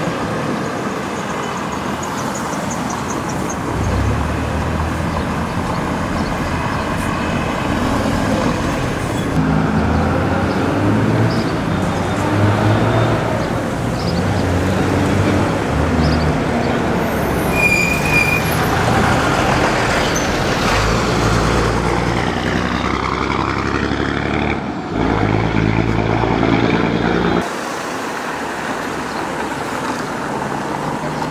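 Street traffic: car and bus engines running and passing close by, with a brief high squeal about halfway through. The sound changes abruptly several times.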